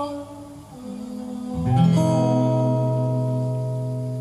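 Acoustic guitars ending a song: a held sung note fades out at the start, then about halfway through a closing chord is strummed and left to ring, slowly dying away.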